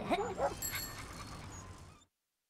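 A cartoon dog's short gliding yelps about half a second in, with a few light high tones, the whole animation soundtrack then fading out to silence.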